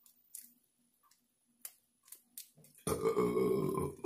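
A few faint clicks of shrimp being peeled and eaten, then about three seconds in a man burps loudly for about a second.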